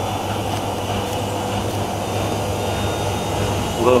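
Washing machines in their final spin cycle: a Miele W5748 drum spinning up towards 1200 rpm, a steady hum of motor and drum, with a Whirlpool AWM 1400 running alongside as it gets ready for its next spin burst.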